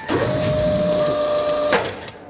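Forklift lift motor, a cartoon sound effect: a short upward glide into a steady electric whine that cuts off abruptly with a click about three-quarters of the way through, as the platform rises.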